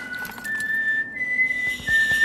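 Whistling: a few long, high, pure notes held one after another with small steps in pitch, two of them overlapping at first, over faint light clicks.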